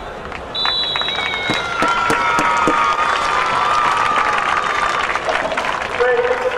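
A long blast on an umpire's whistle, then spectators cheering and clapping.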